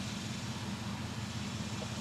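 Steady low hum of an idling engine under a background hiss.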